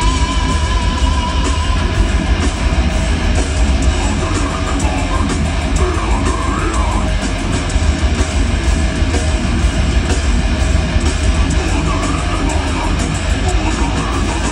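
Metal band playing live at loud volume: distorted electric guitars over dense, fast drumming.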